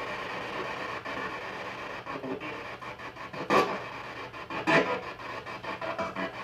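P-SB7 spirit box sweeping radio frequencies in reverse through an external speaker: continuous rasping static broken by brief louder bursts, the strongest a little past halfway and another about a second later.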